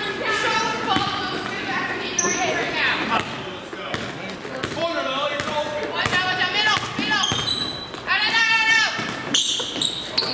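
Basketball dribbled on a hardwood gym floor, bouncing repeatedly, with players' and spectators' voices calling out across the gym.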